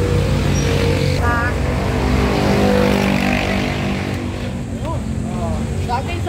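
A motor vehicle's engine running close by, getting a little louder around the middle and then easing off, with brief voices over it.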